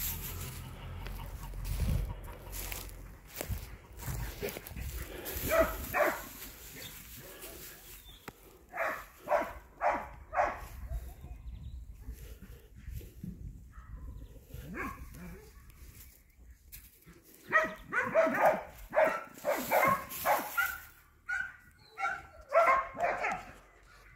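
A dog barking off and on: a short run of barks about nine seconds in, then a longer run of quick repeated barks from about seventeen seconds in.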